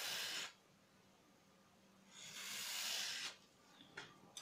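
A utility knife blade drawn through a foam dish sponge, cutting it into strips: two scratchy cutting strokes, the first ending about half a second in and the second lasting about a second from around two seconds in.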